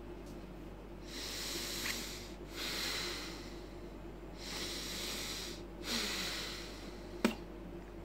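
Breathing in and out through the nose about three times, with the cheeks held full of air: the breathing half of a didgeridoo circular-breathing drill. A short click comes near the end.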